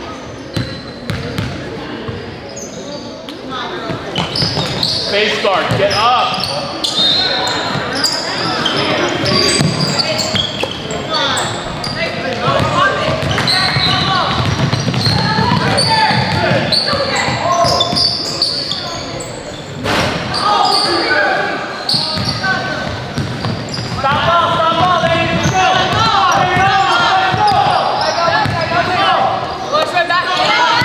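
Basketball game sounds in a gym: many voices of players and spectators calling out over one another, with a basketball bouncing on the court and a single sharp knock about twenty seconds in, all echoing in the large hall.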